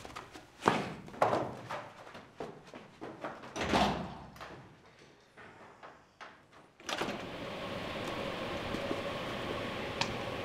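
Door and handling sounds: scattered knocks and clicks, with a louder thud about four seconds in. From about seven seconds a steady background hum and hiss takes over.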